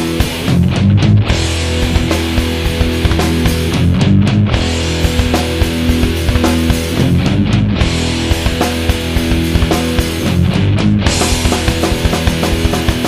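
Instrumental passage of a loud hardcore punk song: distorted guitars and bass over fast drums, with no singing. The riff pattern repeats about every three and a half seconds.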